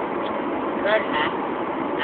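Steady noise inside a car's cabin, with a short faint bit of voice about a second in.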